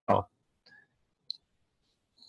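A single brief click about a second and a quarter in, against near silence.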